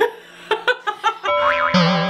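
Edited-in cartoon sound effect: a wobbling, warbling 'boing'-like tone begins about a second and a half in, after a few short sharp bursts.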